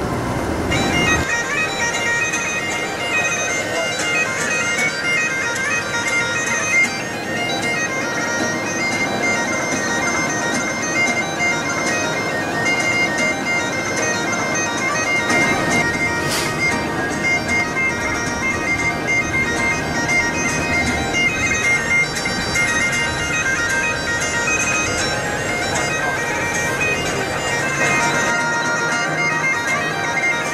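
Bagpipe music playing steadily: a melody over held drones.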